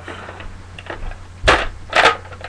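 Two sharp plastic clacks about half a second apart near the end, from the sight being pulled off the rail of a Nerf Recon CS-6 toy blaster.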